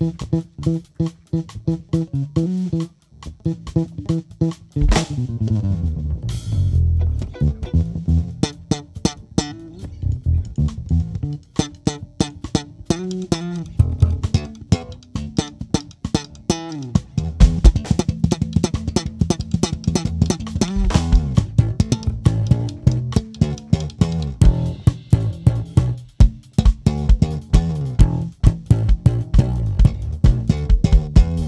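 Electric bass guitar solo: quick plucked notes with slides up and down the neck, over a drum kit.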